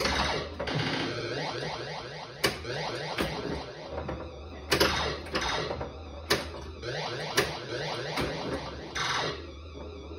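Williams Blackout pinball machine running its game, the MPU board booting again: electronic sound effects of quick rising and falling pitch sweeps, broken about six times by sharp mechanical knocks from the playfield.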